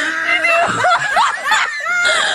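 A person laughing: a run of short laughs that slide up and down in pitch.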